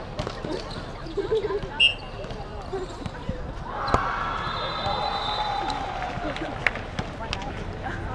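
A basketball bouncing on an outdoor hard court, with a few sharp knocks, the strongest about four seconds in. A voice calls out in a long shout just after it, and other voices carry faintly in the background.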